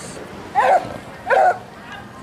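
A dog barking twice, two loud, short barks a little under a second apart.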